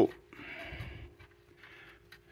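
Near silence between spoken phrases: faint room tone with a steady low hum and two soft stretches of hiss.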